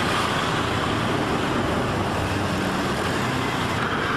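Steady road traffic noise: vehicle engines and tyres on a busy road.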